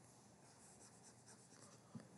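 Near silence, with faint scratching of a stylus on a touchscreen as handwriting is erased.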